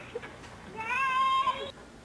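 A cat meowing once, a single drawn-out meow of about a second that stays steady with a slight rise in pitch and then stops abruptly.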